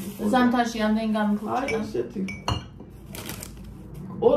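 A woman speaking, then a sharp knock about two and a half seconds in and a brief clinking clatter a moment later, as objects are handled on a kitchen table.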